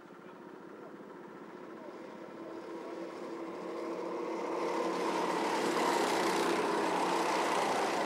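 Several Honda Pro-kart engines running hard, growing steadily louder as the pack approaches and passes close by near the end.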